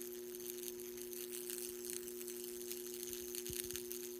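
Steady low electrical hum with a faint crackling hiss above it, from the energised high-voltage electrode working in the aluminum oxide powder.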